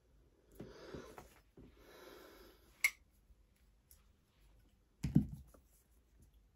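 Faint sounds of a letter being written by hand: soft pen-and-paper rustling, a sharp click about three seconds in, and a low thump near the end.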